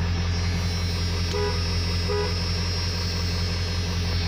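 1997 Ford F350's 7.3 Powerstroke turbo-diesel V8 idling steadily, heard from inside the cab. Two short beeps sound about a second and a half in and again just under a second later.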